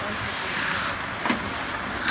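Ice hockey rink sounds: skate blades scraping the ice, with one sharp clack of a stick striking the puck a little over a second in.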